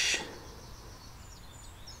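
Quiet outdoor background with faint, high bird chirps.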